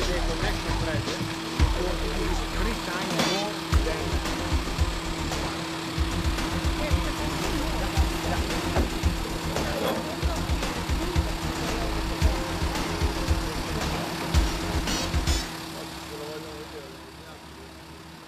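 A steady engine hum from a running vehicle or pump, with scattered metallic clinks and knocks from pipe couplings and fittings being handled. The sound fades out over the last couple of seconds.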